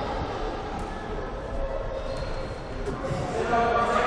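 Indistinct voices echoing in a large sports hall, with a couple of short thuds of a ball being played about a second in and again near three seconds.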